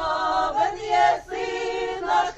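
Mixed folk choir of women's and men's voices singing a Ukrainian carol in full harmony, without instruments, with held notes that change about half a second in and again a little past one second.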